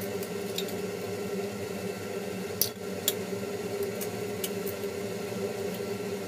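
Eggs being cracked into a small glass bowl: a few sharp clicks and taps of shell on glass, over a steady background hum.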